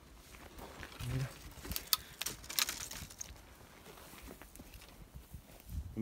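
Footsteps through dry brush, with dead twigs and branches crackling and snapping, thickest between about one and a half and three seconds in. A person mutters briefly about a second in.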